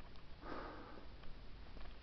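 A short sniff close to the microphone, about half a second in and lasting about half a second.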